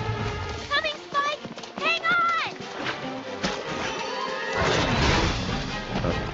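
Cartoon episode soundtrack: background music with short high voice-like cries in the first two and a half seconds, then a loud burst of noise about five seconds in.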